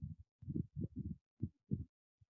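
Muffled low thuds of keystrokes on a computer keyboard, five or so irregular taps.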